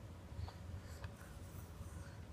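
Faint clicks and rubbing of plastic toys on a baby activity jumper being handled by a toddler, about half a second and one second in, over a low steady room hum.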